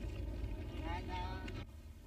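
A voice calling out briefly over a steady low hum; the sound cuts off abruptly near the end.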